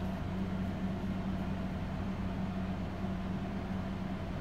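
Steady low hum with a light hiss: background room noise, with no distinct events.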